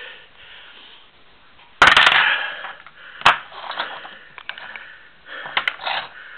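Handling noises from a hand-bent steel hex bolt as it is moved and set down on a wooden table. There is a loud rustling burst about two seconds in, a sharp click about a second later, and a few lighter clicks near the end.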